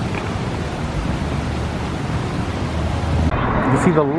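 Steady outdoor street noise, a dense traffic-like hiss and rumble, that changes character about three seconds in. A man's voice starts near the end.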